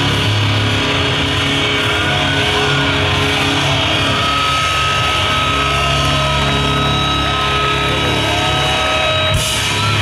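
Metalcore band playing live at full volume through a stage PA: sustained distorted electric guitars and bass in a dense, steady wall of sound. A thin steady high tone joins about four seconds in.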